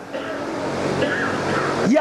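A low murmur of many voices from a seated audience, a rushing noise that slowly swells, with a man's voice starting again near the end.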